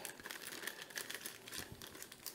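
Clear plastic kit bag crinkling faintly as hands reach inside and pull out a small bag of parts, a quiet run of small irregular crackles.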